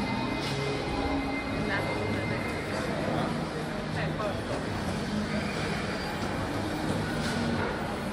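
Shopping-mall background: indistinct voices of people nearby over background music, with a steady hum.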